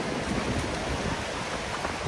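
Shallow sea surf washing in and out over a flat sandy beach: a steady rush of water.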